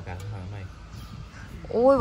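A woman's voice: quiet, low speech at first, then a loud drawn-out exclamation, "โอ้ย" (oi), near the end.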